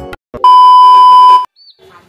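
A loud, steady electronic beep, one pure tone held for about a second, starting about half a second in and cutting off abruptly.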